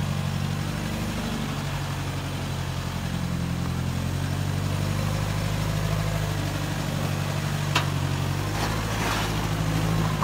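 Toyota Hilux pickup's engine running steadily at low revs as the truck crawls over rough ground. A sharp click comes near the end, followed by a short scraping noise.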